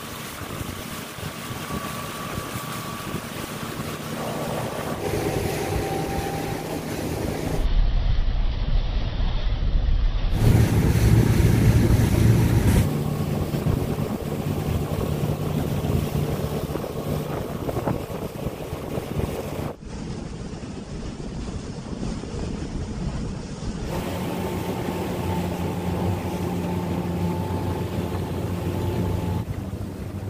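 Small fishing boat's engine running steadily under way, with water rushing past the hull and wind buffeting the microphone. The mix changes abruptly several times.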